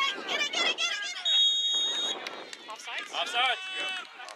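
High-pitched shouts and calls from players and spectators at a youth soccer game. A single steady, high whistle blast lasting about a second starts just after one second in, typical of a referee's whistle stopping play.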